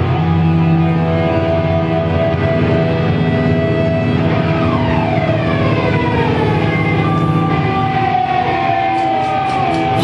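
Live hardcore punk band playing: distorted electric guitars hold ringing notes, sliding down in pitch from about halfway through. A few drum hits come just before the end, where the full band with drums comes back in.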